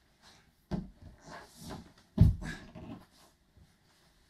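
A person rolling across a wooden floor in a cotton judo uniform: a thud about three-quarters of a second in and a heavier thud just after two seconds as the body lands, with rustling cloth and hard breathing between them.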